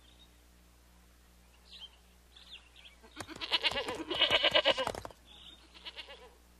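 Several goats bleating at once: a loud, wavering burst of overlapping bleats about three seconds in, lasting about two seconds. A few faint, short, high chirps come before and after it.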